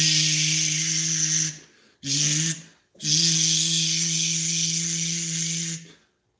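A man's held, hissing vocal strain on one low pitch, three times with short breaks for breath, as an electrical nerve-stimulation device on his body is turned up higher.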